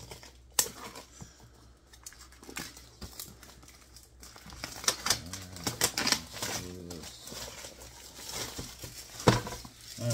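Plastic shrink wrap crinkling as it is slit and peeled off a cardboard box, getting busier about halfway through. There is a sharp knock near the end.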